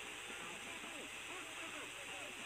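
Faint background voices murmuring under a steady broadcast hiss; no loud sound.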